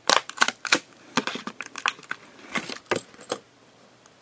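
Clear plastic blister of a diecast toy car's blister card being pried and peeled away from the cardboard: a run of sharp crackles and clicks that stops about three and a half seconds in.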